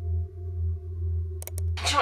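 Low, pulsing electronic drone with steady higher tones held over it. About a second and a half in come two quick mouse clicks, and just before the end a loud burst of hiss breaks in.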